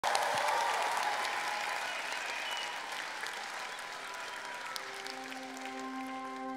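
Studio audience applauding, loudest at the start and fading away. About five seconds in, soft held music chords begin as the song's intro.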